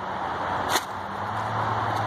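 Steady outdoor background noise with a low engine hum that comes in about a second in, and a single sharp click shortly before it.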